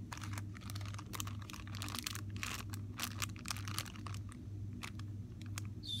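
Clear plastic packaging crinkling as it is handled, with irregular crackles throughout, over a steady low hum.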